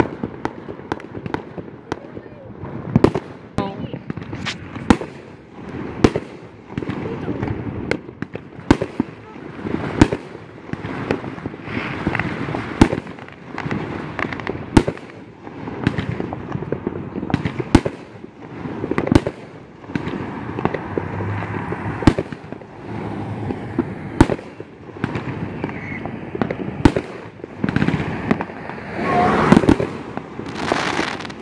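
Aerial fireworks bursting in a long irregular series of sharp bangs, roughly one every second or two. A louder hissing swell comes near the end.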